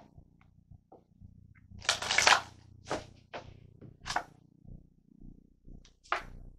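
Tarot cards being shuffled and handled: a rustling burst about two seconds in, then two shorter swishes and a few light ticks.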